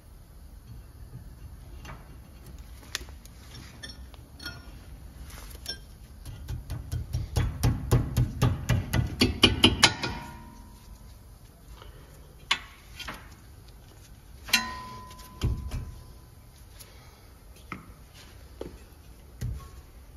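Ratchet wrench clicking rapidly for about four seconds around the middle, growing louder, as a brake caliper bolt is run in. A few metallic clinks of tools on metal follow, one with a short ringing tone, then a dull thump.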